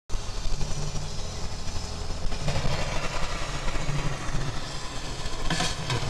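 Road noise inside a moving car: a steady low rumble of engine and tyres under a haze of hiss, with a short burst of louder rushing noise near the end.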